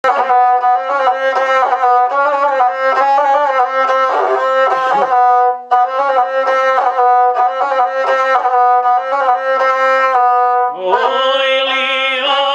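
Gusle, the single-string bowed Serbian folk fiddle, playing an instrumental introduction in a run of short bowed notes, with a brief break just before the middle. Near the end a man's voice comes in, rising into the song over the gusle.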